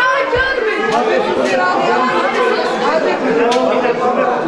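Several people talking over one another in a crowded room, a loud jumble of voices with no single speaker standing out. A brief low thump comes about a third of a second in, and a few sharp clicks follow later.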